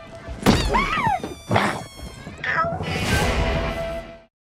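Film fight sound effects: three sharp hits about half a second, a second and a half and two and a half seconds in, with a short cry that rises and falls in pitch after the first hit, over a steady held music tone.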